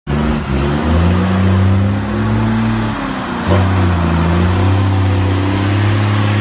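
Mercedes-Benz 1620 truck's six-cylinder diesel engine running loud through a straight-pipe exhaust, held at a raised, steady rev. The revs dip briefly about three seconds in and pick back up.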